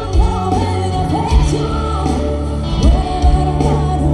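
Live band music with a singer, amplified over a stage PA, with held bass notes under the sung melody.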